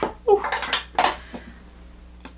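Small hard objects falling and clattering, with several sharp knocks over the first second and a half, and a woman's startled "ooh".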